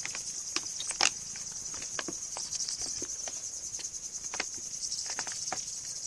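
Crickets trilling steadily and high-pitched in the background, over scattered clicks and crinkles of kittens' paws scrabbling on a plastic pet-food bag, the loudest about a second in.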